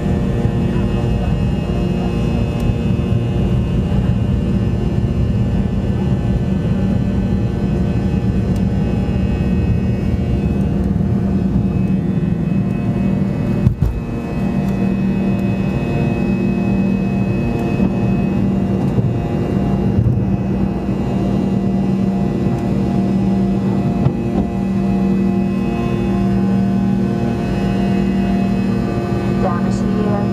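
Airliner jet engines at takeoff thrust, heard from inside the passenger cabin: a steady loud roar with a constant hum and whine through the takeoff roll and climb-out. A single sharp thump comes about halfway through.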